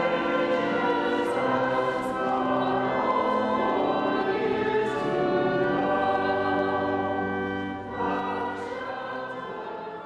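A church congregation, led by a few singers at microphones, singing a hymn together in slow, held notes. The singing drops in level about eight seconds in.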